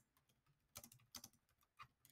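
Faint computer keyboard typing: a run of light, irregular key clicks.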